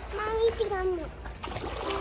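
Swimming-pool water splashing as a child kicks her legs while holding the pool edge, after a short stretch of voice in the first second.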